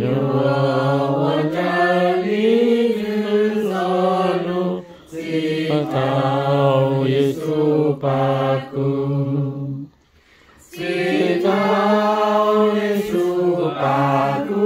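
A small group of men and women singing a hymn unaccompanied, in long held phrases, with a short breath about five seconds in and a brief pause about ten seconds in.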